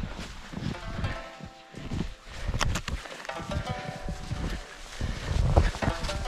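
Footsteps crunching through deep snow, a run of steps at a steady walking pace.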